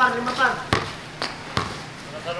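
A basketball bouncing three times on a hard court, the bounces about half a second apart, after a brief call from a man's voice at the start.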